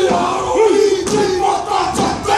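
Māori kapa haka group chanting a haka: many voices shouting and chanting in unison on strong held notes, with two sharp percussive hits, one about a second in and one near the end.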